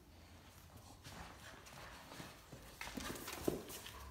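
Great Dane claws clicking and paws scuffling on a tile floor as an adult Great Dane and a puppy play, busier in the second half, with one sharper knock about three and a half seconds in.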